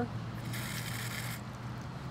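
Water hissing out of a test cock on a backflow prevention assembly opened for about a second and then shut, flushing foreign material out of it, over a low steady hum.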